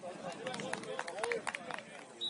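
Distant voices calling out across a football pitch. From about half a second in, a quick series of sharp clicks runs under them, roughly four a second.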